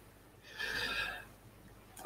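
A man's short audible breath in, lasting under a second, about half a second in.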